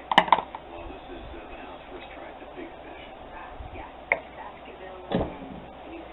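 Parts being handled on a workbench at an arbor press: a quick double knock at the start, a single click about four seconds in, and another knock about a second later.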